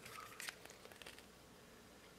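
Near silence, with a few faint light clicks in the first second from handling a plastic dial caliper.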